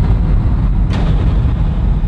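Deep, steady low rumble from a trailer's sound design, with a sudden boom-like hit about a second in.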